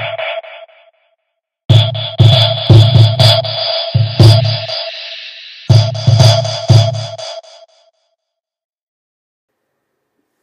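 Electronic laptop music from a Max performance patch: sampled beats with a low kick and a ringing pitched tone. It comes in three phrases that break off and restart, and stops abruptly about eight seconds in. It is a flubbed ending: the bell that was meant to come back one last time does not return.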